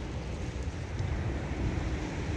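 Wind buffeting the microphone: a steady rushing noise with uneven low rumbling gusts.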